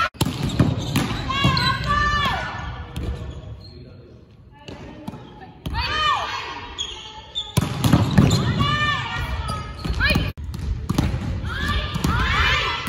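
Volleyballs being struck and bouncing on a wooden gym floor, sharp smacks echoing in a large hall, with players calling out between hits. The activity drops to a quieter stretch around four seconds in.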